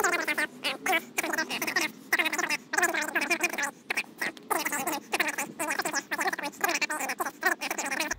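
A man's speech played fast-forward, sped up into rapid, high-pitched chipmunk-like chatter. Normal-speed speech returns just after it ends.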